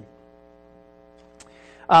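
Faint, steady electrical mains hum with several even tones, heard in a pause between spoken sentences; a man's speech resumes near the end.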